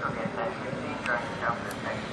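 Indistinct voices in short bursts over steady background noise, with two sharp clicks, one about a second in and one near the end.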